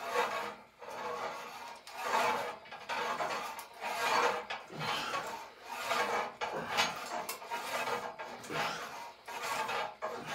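Cable of a lat pulldown machine running over its pulleys, a rasping rub that swells and fades about once a second as the bar is pulled down and let back up.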